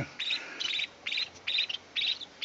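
A cricket chirping steadily: short, high, pulsed chirps repeating about two to three times a second.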